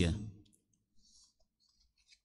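The last word of a man's voice dies away with a short echo in a large hall, then near silence with a few faint clicks.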